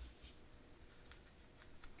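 Near silence with faint rustling and a few light ticks from hands pressing a felt circle onto a gathered tulle flower.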